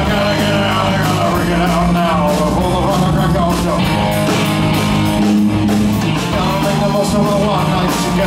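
Live rock band playing loudly on electric guitar, bass guitar and drum kit, with a steady heavy bass line under bending lead lines.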